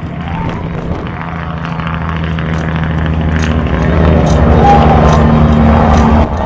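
A sustained low drone made of several steady tones, growing louder over the first few seconds, with a higher tone joining near the end before it stops, and faint scattered clicks above it.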